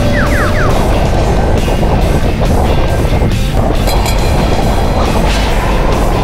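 A go-kart running at speed, its motor and wind noise heard from the kart itself, under loud background music.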